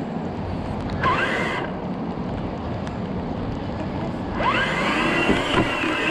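Steady road and engine noise of a car being driven, heard from inside the cabin. A short rising tone comes about a second in, and from about four and a half seconds in a rising sweep and a few steady tones join it.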